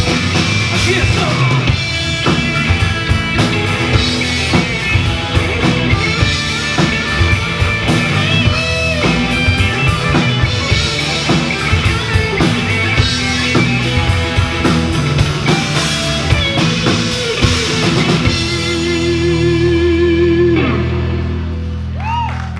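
Live country-rock band playing an instrumental passage: electric guitar lead over bass and drum kit. About 18 seconds in the drums stop and the band holds a ringing final chord, with one wavering guitar note, that fades out.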